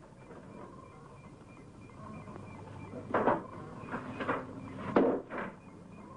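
A faint steady hum, then a run of about five sharp knocks and thuds over the last three seconds, someone banging and rattling a wooden door.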